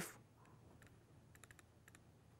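Near silence with a few faint, light ticks of a stylus tapping a pen tablet as a word is handwritten, several in quick succession about a second and a half in.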